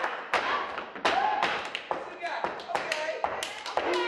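Step dancers stomping and clapping: sharp strikes of feet and hands in an uneven rhythm, with short shouted calls from the dancers between them.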